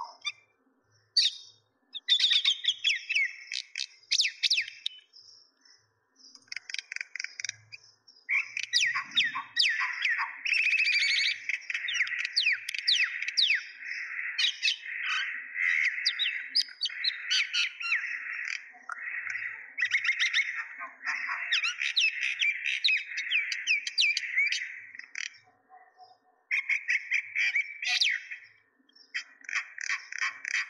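Small birds chirping busily, many quick overlapping chirps and tweets with a few short pauses.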